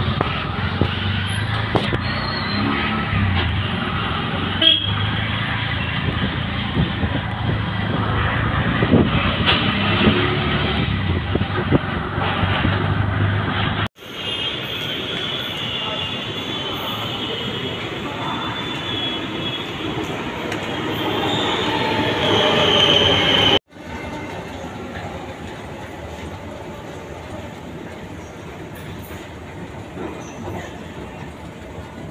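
Street traffic heard from a moving auto-rickshaw, a steady rumble and road noise. After a sudden cut about fourteen seconds in, a metro train at the platform grows louder for several seconds, with a high steady tone near the end; after a second cut, a quieter steady hum of the station.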